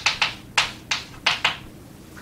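Chalk writing on a blackboard: about six short, sharp taps and scrapes as letters are stroked out.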